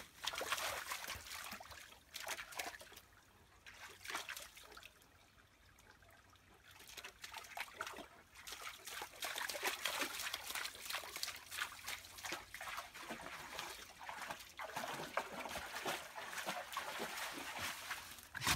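A dog splashing and paddling through a shallow trickling stream, with irregular splashes and patters of water. A quieter stretch comes a few seconds in.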